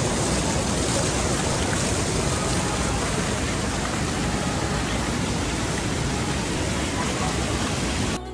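Fast, shallow water rushing over a low weir and churning down a broad, shallow channel. A steady rush of white noise, held close to the water.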